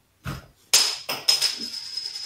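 A sudden crash-like hit with a thin, high ringing tone that holds steady for about two seconds, with two more knocks just after the first.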